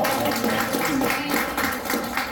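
A few people applauding with hand claps as a song ends, with some voices mixed in.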